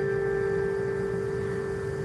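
A single held piano note rings on and slowly fades, a sustained pause in slow instrumental piano music.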